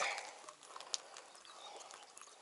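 Faint clicks and scrapes of a freshwater mussel shell being pried apart by hand, the shell still clamped tight.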